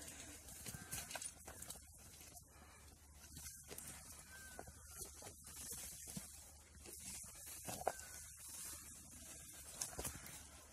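Komodo dragons feeding on a deer carcass: faint, scattered rustling, snapping and tearing of flesh and leaf litter over a steady high hiss, with one sharper snap late on. A few brief faint chirps sound in between.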